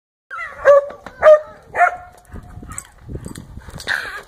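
A spaniel barking three times in quick succession, about half a second apart, followed by softer scuffling as it plays.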